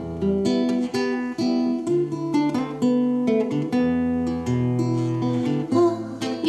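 Solo acoustic guitar playing an instrumental passage between sung verses: picked and strummed chords over a bass line that changes about once a second.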